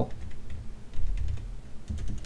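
Computer keyboard typing: a few scattered keystroke clicks.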